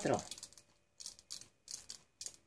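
Aloe vera gel squeezed from a plastic squeeze bottle's nozzle into a plastic measuring spoon: several short, faint squirts and plastic clicks in the second half.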